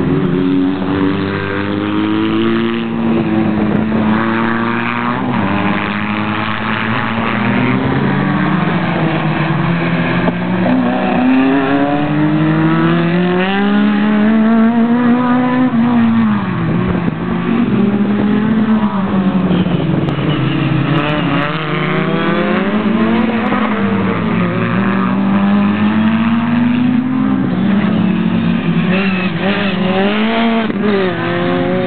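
A small Autobianchi A112 slalom car's engine, revving up and dropping back over and over as it accelerates and lifts through the course. The note swings up and down every few seconds.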